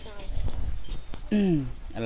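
Speech: a person's voice talking, with a drawn-out syllable falling in pitch in the second half.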